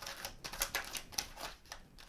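A tarot deck being shuffled by hand, overhand: a quick run of light card clicks and flicks, several a second, thinning out near the end.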